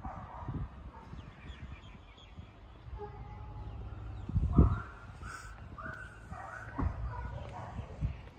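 Several short animal calls in the second half, over a low steady outdoor rumble, with a low thump about halfway through that is the loudest sound.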